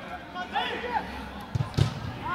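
Football struck hard in a shot at goal: two thumps near the end, the second the louder. Faint shouts from players on the pitch come just before.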